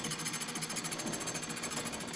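Early Edison DC fan motor with a Gramme ring armature running at a steady speed with a fast, even flutter, relatively quiet, belt-driving the governor and mandrel of a homemade cylinder phonograph.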